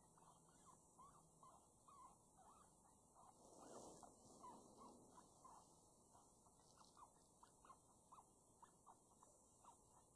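Faint run of short, high squeaks, a few a second: animal distress calls played through an electronic FoxPro game caller. A brief soft swell of noise comes about four seconds in.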